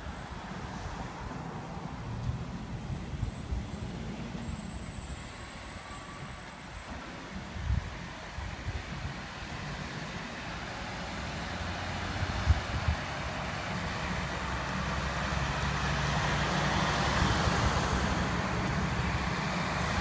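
Diesel engine of a red fire tanker truck approaching along the street, a low running rumble that grows steadily louder over the last several seconds as the truck nears.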